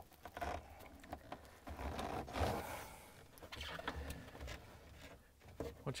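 Faint handling noises of a refrigerator ice maker's plastic wiring-harness connector being pushed together by hand: light scraping and a few small clicks.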